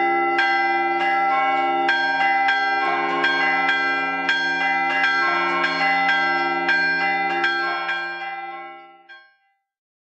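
Church bells ringing, several bells struck in a quick pattern about twice a second, their tones overlapping; the ringing fades out and stops near the end.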